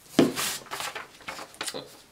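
Handling noises on a tabletop: a knock as a small jar is set down, then a series of light rustles and taps as items and a printed paper sheet are handled.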